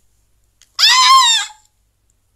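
A woman's short, high-pitched squeal: one loud call of under a second, about a second in, that rises a little and then falls away.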